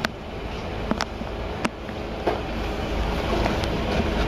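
Steady low hum of the ship's machinery, with a few light clicks over it.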